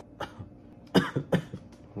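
A man coughing: a small cough just after the start, then two sharp coughs about a second in, a third of a second apart.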